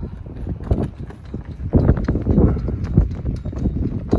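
Cloth flag flapping and snapping in gusty wind: a fast, irregular run of cracks, louder in a gust about halfway through, over wind rumble on the microphone.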